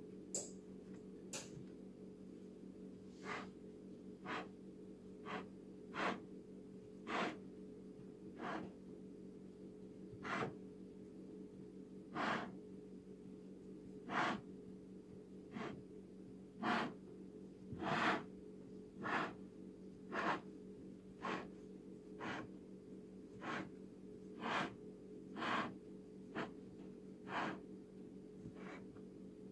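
Faint, short rubbing and pressing noises about once a second as floured fingers work pie pastry down into a pie pan and along its rim, over a steady low hum.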